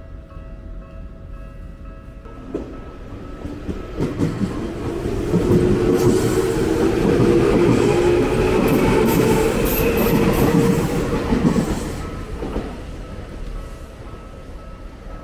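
Tokyu Oimachi Line electric commuter train passing close by over a level crossing: wheels rumbling and clattering on the rails. The sound builds from about four seconds in, is loudest through the middle, and fades away near the end.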